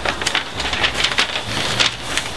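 Paper sheets rustling and crinkling as they are handled, a run of short, irregular crackles.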